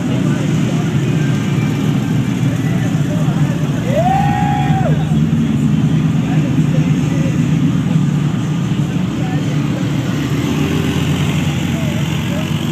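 Engines of lifted off-road vehicles and a rock buggy running at low speed, a steady low drone throughout, with people's voices in the background. About four seconds in comes a short high tone that rises, holds and falls.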